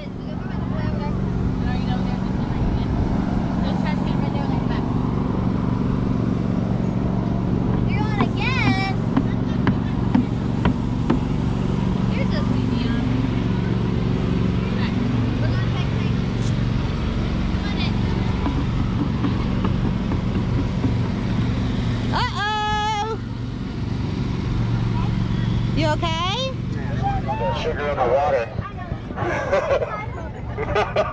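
A steady low motor hum, with brief high children's voices about 8 and 23 seconds in and talk near the end.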